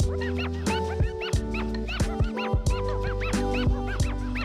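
Background music: held chords with regular percussive hits and many short swooping high notes.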